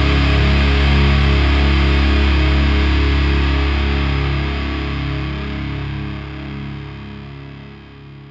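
Closing chord of a heavy stoner-metal song: distorted electric guitars left ringing over a deep low note. It holds steady for about four seconds, then fades away toward silence.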